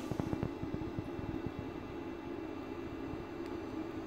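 Faint steady hum with a low fluttering buzz from the running RGB laser projector as it scans the open beam fan.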